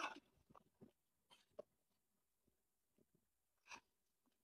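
Near silence, broken by a few faint, brief noises: the clearest right at the start and another just before the end.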